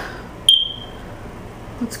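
A single short, high electronic beep about half a second in, starting with a sharp click and fading quickly.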